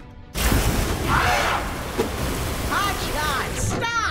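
Cartoon action sound: a rushing noise starts suddenly a moment in and carries on, with short voiced cries or exclamations over it.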